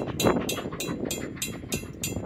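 Railroad grade-crossing warning bell ringing rapidly, about four strokes a second, over the low rumble of passing passenger coaches.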